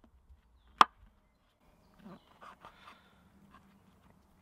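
Knife blade chopping through a mushroom onto a spalted beech board: one sharp chop about a second in, then faint soft cutting and handling sounds.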